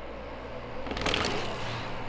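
Mountain bike rolling on concrete, with tyre and bike noise swelling into a scraping rush about a second in.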